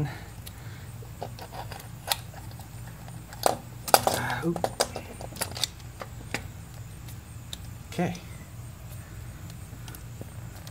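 Scattered light metallic clicks and clinks as a four-barrel carburetor is handled and set back down onto its intake manifold, with a cluster of knocks about four seconds in.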